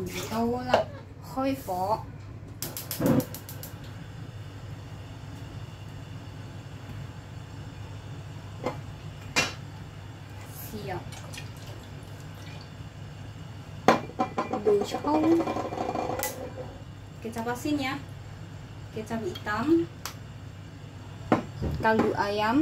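Seasoning bottles handled over a steel stew pot: sharp clicks and knocks, including a quick rattle of clicks near the start and a louder knock about 14 s in, over a steady low hum. A voice talks at times.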